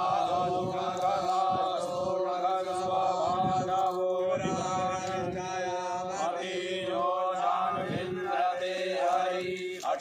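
A group of men chanting Sanskrit mantras together, a continuous recitation held on steady, droning notes.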